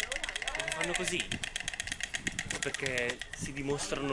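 A pair of white storks clattering their bills on the nest, a fast, even rattle of about ten clacks a second that dies away near the end. It is their display of greeting and bonding between mates.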